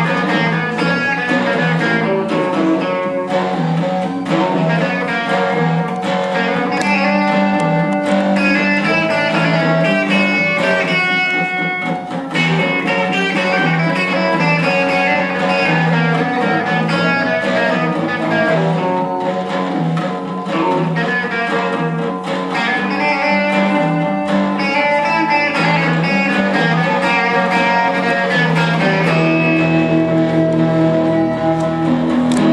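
Live instrumental rock played on electric guitar and amplified acoustic guitar, plucked notes over held tones, continuous and steady in level.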